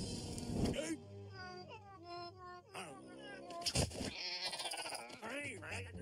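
Cartoon soundtrack of wordless character vocalizations: squeaky, gliding cries and exclamations, with sharp sound-effect hits near the start and a little before the four-second mark.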